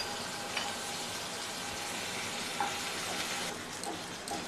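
Paneer cubes slow-frying in a little oil in a non-stick kadhai, a steady sizzle with a couple of faint clicks.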